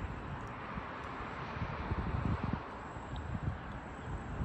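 Wind on the microphone, rumbling in uneven gusts over a steady outdoor hiss.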